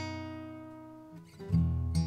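A guitar chord ringing and slowly fading, then a new chord struck about a second and a half in.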